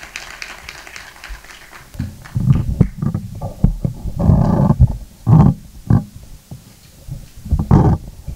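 Microphone handling noise: irregular low thumps and rumbles as the podium microphone is gripped and adjusted, with a longer rumbling stretch a little past the middle.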